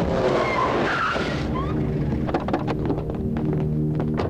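Film sound effects of cars driving fast with tyres skidding, loudest in the first second and a half, under a background music score. After that comes a steady low drone with a run of quick clicks.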